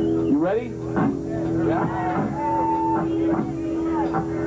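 A steady droning note from the band's amplified instruments, with shouting voices sliding up and down in pitch over it and one higher held tone about halfway through.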